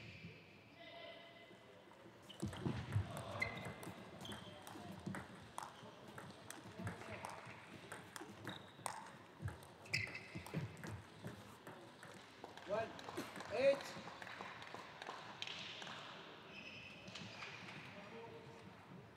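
A celluloid table tennis ball being struck by rubber-faced paddles and bouncing on the table in a rally, a quick series of sharp clicks that starts about two seconds in and stops near the fourteen-second mark.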